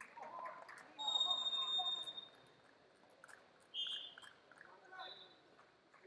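A referee's whistle gives one loud, steady blast of about a second, starting about a second in. Two shorter, fainter whistle tones follow near the end, over the murmur of voices in the arena.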